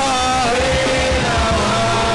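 Live worship music: a singer holds long notes that slide from pitch to pitch over a band with a steady beat.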